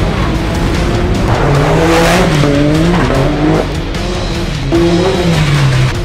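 Can-Am Maverick X3's turbocharged three-cylinder engine revving through an aftermarket exhaust, its pitch rising and falling in two spells, about a second in and again near the end, with music underneath.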